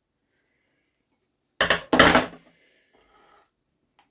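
A short clatter of hard objects about a second and a half in, two knocks close together, then faint handling sounds.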